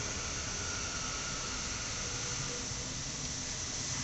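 Steady engine-bay noise: a low hum under an even hiss, without change or distinct events, consistent with a Mercedes E220 engine idling.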